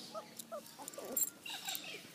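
Ferret making short, quick chirping clucks, several a second, with faint scratchy clicks among them.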